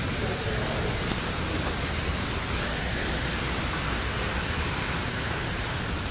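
Tiered stone fountain splashing: a steady, even rush of falling water.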